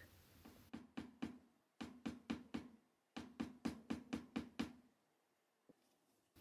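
A stoneware clay tube bent into a ring, tapped down against the work board to flatten one point of it: quick, soft knocks about five a second in three runs, the last run the longest, then one faint tick near the end.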